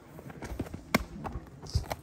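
A baseball pitcher's delivery: shoes scuffing and stepping on dirt, with one sharp smack about a second in.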